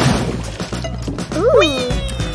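Cartoon background music with a short noisy burst at the start. About one and a half seconds in comes a brief, meow-like cartoon vocal effect whose pitch slides up and then down.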